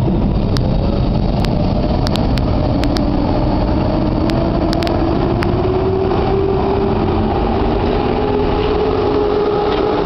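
PKP EP07 electric locomotive hauling a passenger train approaching along the platform: a loud, steady rumble with a humming tone that rises a little in pitch over the first half and then holds, with a few sharp clicks in the first five seconds.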